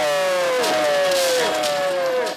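A high singing voice holding long drawn-out notes, three in a row, each sliding downward in pitch.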